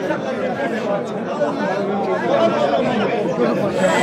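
A crowd of men talking over one another, many voices at once with no single voice standing out.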